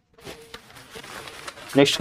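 Cotton saree fabric rustling softly as it is handled and laid down on the stack.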